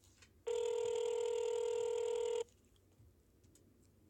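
Telephone ringback tone heard through a smartphone's speakerphone: one steady two-second ring starting about half a second in and cutting off sharply. It signals that the called number is ringing and has not yet been answered.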